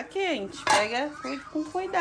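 Kitchen clatter of metal pots, dishes and cutlery being handled at a stainless-steel sink, with one sharp clink about a third of the way in.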